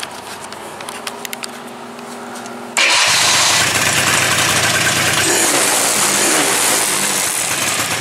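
A four-wheeler (ATV) engine cranks for a few seconds, then catches suddenly and keeps running loudly and steadily. It started without choke on a freshly adjusted carburetor.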